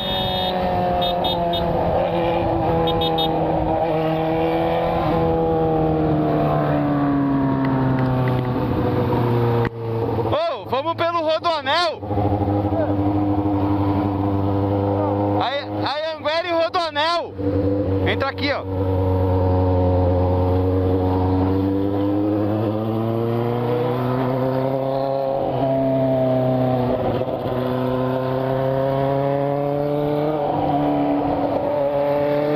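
Yamaha FZ6's inline-four engine running steadily at road speed, its pitch drifting slowly up and down with the throttle. Twice, about ten and sixteen seconds in, a rapidly wavering higher-pitched sound cuts across it for a couple of seconds.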